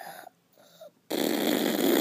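A sudden loud, even rushing and crackling noise starting about a second in: handling noise from the toy and fingers rubbing over the phone's microphone.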